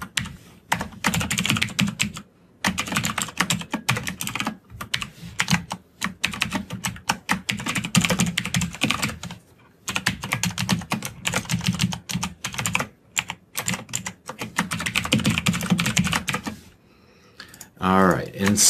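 Fast typing on a computer keyboard: long runs of rapid keystrokes broken by a few short pauses.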